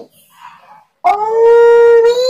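A person's voice holding one long, steady high note, starting about halfway through, loud and drawn out.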